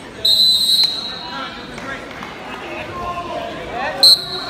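A wrestling referee's whistle: one loud blast of about half a second stopping the action, then a short blast near the end that starts the wrestling again from the down position.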